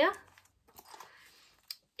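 Faint rustling as a long zip wallet is handled and turned over in the hands, with one small sharp click near the end.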